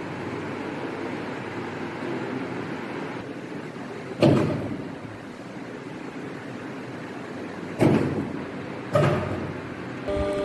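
Universal testing machine's hydraulic drive running with a steady rushing noise as its plunger loads a steel bar in a three-point bending test. Three sharp knocks break through it, one about four seconds in and two close together near the end.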